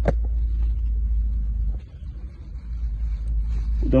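Low, steady rumble of wind buffeting a phone microphone, dropping away briefly about halfway through.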